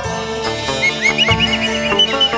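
Chầu văn ritual music: a bamboo flute (sáo) plays a quick run of ornamented notes that bend upward, about a second in. Under it are plucked moon lute (đàn nguyệt) and a few low beats.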